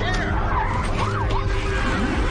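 Dense emergency soundscape: many overlapping wailing sirens rising and falling quickly over a steady low rumble of vehicles, with a few sharp clicks.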